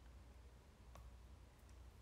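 Near silence: room tone with a low steady hum, a faint click about a second in and a couple of fainter ticks near the end.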